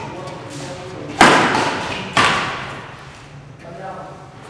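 Two loud, sharp badminton racket strikes on the shuttlecock about a second apart, each ringing out in the hall's echo.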